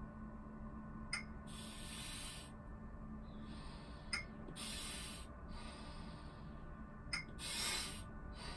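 A metronome ticks three times, about three seconds apart. After each tick comes a hissing breath of about a second, drawn in against a 25 cm H2O load through a spring-loaded inspiratory threshold trainer.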